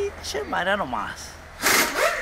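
People talking, with a short burst of hiss near the end over a faint steady low hum.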